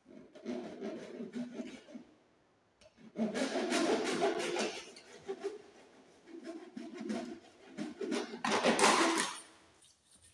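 Plastic trunking cover rubbing and scraping against the trunking and socket box as it is slid into place and pressed on by gloved hands, with louder stretches about three seconds in and near the end.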